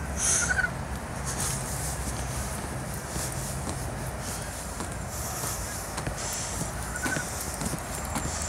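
Footsteps of a person walking on a paved path, faint and irregular, over a steady outdoor background noise. Two brief faint high chirps, one near the start and one near the end.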